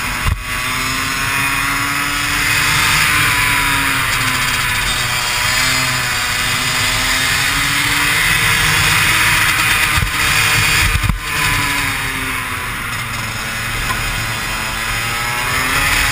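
Kart engine heard from on board, its pitch rising as the kart speeds up and falling as it slows for corners, several times over, with a brief drop about 11 seconds in. Wind rushes over the microphone throughout.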